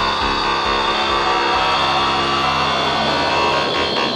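Dark techno music: dense, droning layered synth tones over a thumping low kick that fades out about halfway through, a breakdown in the mix.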